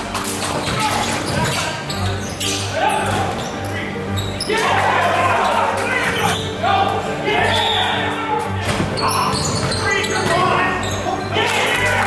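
Background music with a steady bass line laid over the sounds of an indoor basketball game: a ball bouncing on the gym floor and players calling out.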